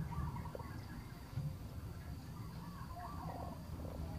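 Short, squeaky animal chirps and warbles come and go, with a brief pulsed call near the end, over a steady low rumble of wind.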